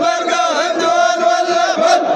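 A group of men chanting a Hadrami zamil in unison, many voices holding and bending a drawn-out melodic line together.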